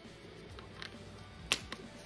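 Faint background music, with a single sharp metallic click about one and a half seconds in as a brass air-hose quick-connect coupler is handled against an air ratchet's steel plug.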